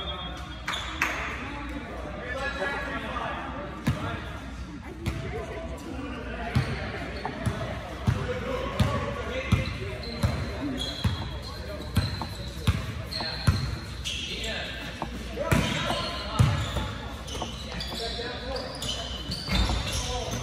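Basketball being dribbled on a gym floor, a steady run of bounces that starts about a third of the way in, echoing in the large hall.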